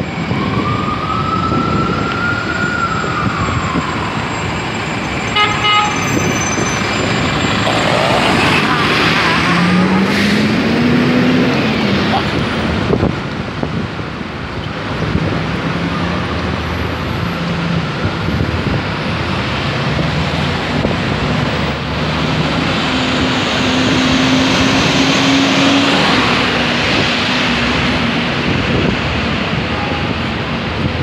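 Busy city street traffic: cars, taxis, vans and a bus running in slow traffic, with a siren winding down at the start, a short horn toot about six seconds in, and an engine speeding up around ten seconds in.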